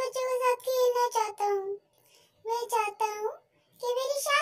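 A high, child-like voice singing in short held phrases, with brief pauses between them.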